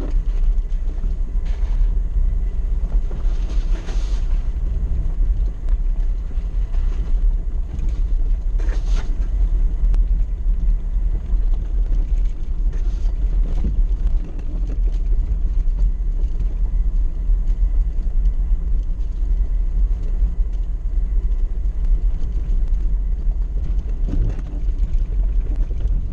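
Suzuki 4x4 crawling over a rough stony track, heard from inside the cabin: a steady low engine and drivetrain rumble, with a few brief knocks and rattles as it goes over bumps.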